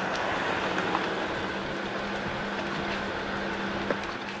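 A steady low mechanical hum, with one sharp knock near the end.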